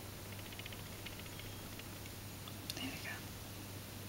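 Faint small clicks and rubbing of a metal crochet hook drawing yarn through stitches, in scattered little clusters. About three quarters of the way in comes a brief soft vocal sound, close to a whisper.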